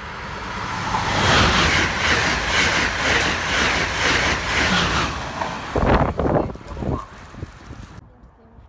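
Amtrak Acela high-speed electric trainset passing through a station at speed: the roar of wheels on rail and rushing air swells in about the first second, then runs loud with a regular pulsing about twice a second. A few loud low gusts of the train's wind hit the microphone near the end as the train goes by, then the sound fades.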